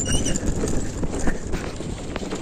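Scooter riding slowly over a rough, wet, stony dirt track: a low rumble with irregular knocks and clatters as the tyres hit the stones.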